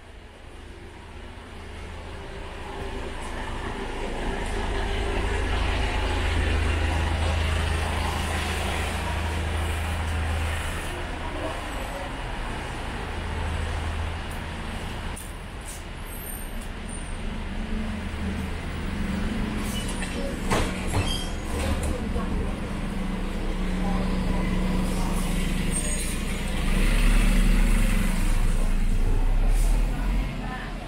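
Street traffic: motor vehicle engines running and passing close by, a low rumble that swells over the first few seconds and is loudest near the end.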